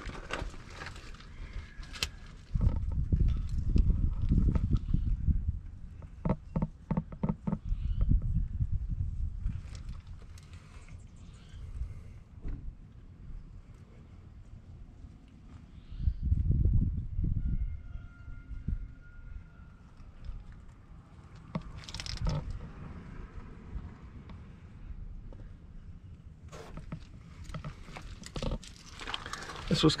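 Low rumbling handling and wind noise on the camera microphone, coming in uneven bursts, with a quick run of clicks about six seconds in.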